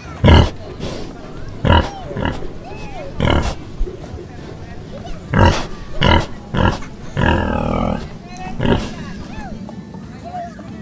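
Pig oinks and grunts, short calls repeated about eight times roughly a second apart, one drawn out a little longer late on, over background music.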